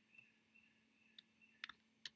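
Near silence broken by computer mouse clicks: a single click about a second in, then a quick double click near the end, as text is selected on screen.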